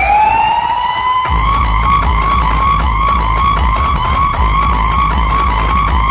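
Loud DJ sound system playing a siren effect: a tone sweeps up in pitch, then about a second in a heavy bass beat drops in under a siren wail that wobbles about twice a second.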